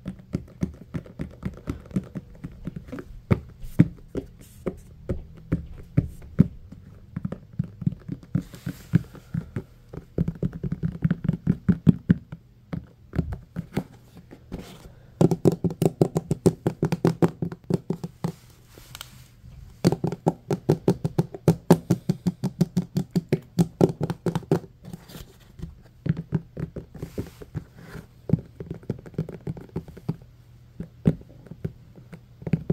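Fingertips and nails tapping on a plastic tray of rounded blue cube moulds and its clear plastic side, a steady run of quick taps with two spells of fast finger-drumming in the second half.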